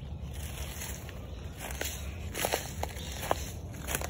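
Footsteps crunching on dry leaf litter and twigs, a handful of crisp crackles in the second half over a steady low rumble.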